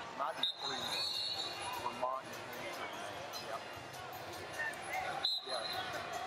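Ambience of a large wrestling arena, with scattered voices and shouts echoing around the hall. A high steady whistle sounds about half a second in, and again near the end.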